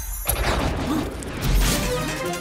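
Cartoon sound effect of a mossy stone cracking open: a dense, noisy cracking sound over a low rumble, growing louder about one and a half seconds in.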